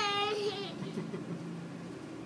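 A toddler crying: the tail of a high wail that falls slightly and ends about half a second in, followed by faint low sounds. The cry comes as he is held at the edge of the cold pool water he dislikes.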